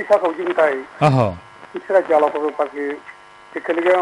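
Speech only: a voice talking in a radio broadcast. A faint steady hum shows through in a brief pause about three seconds in.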